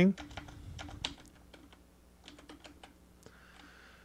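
Typing on a computer keyboard: a quick run of keystrokes in the first second or so, then a few scattered keystrokes.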